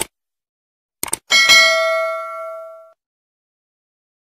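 Subscribe-button animation sound effect: a click at the start, two quick clicks about a second in, then a single bell ding that rings out and fades over about a second and a half.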